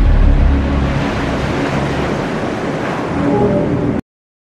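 Intro ident music with a dense rushing sweep behind it. Its deep bass fades over the first second, and it cuts off abruptly at the end.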